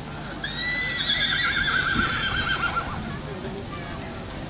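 A horse whinnying once, a call of about two and a half seconds starting about half a second in, its pitch quavering up and down as it fades.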